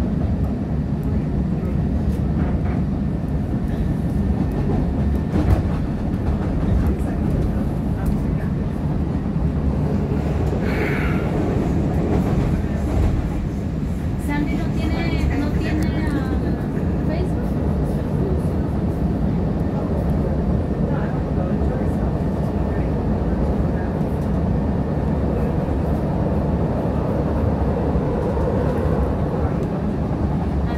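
CTA 2600-series rapid transit railcar running along the track, heard from inside the car: a steady rumble of wheels and traction motors.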